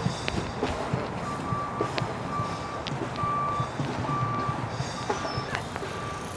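A single-pitched electronic beep repeating in short pulses, a little faster than once a second, starting about a second in, over outdoor background noise with a few faint taps.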